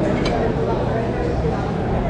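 Steady babble of many people talking in a busy, reverberant eating hall, with one short metallic clink just after the start.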